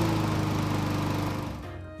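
Honda GCV160 single-cylinder engine on a walk-behind lawn mower running steadily just after a recoil-pull start, fading out near the end.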